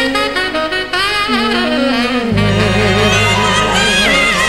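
Live band playing a pop ballad, with a saxophone carrying the melody in a wavering line with vibrato; low bass notes and fuller accompaniment come in a little past halfway.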